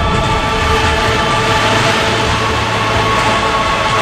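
Steady low rumble of a mine bench blast as the blasted rock face collapses and the dust cloud rolls out, with a faint sustained musical chord underneath.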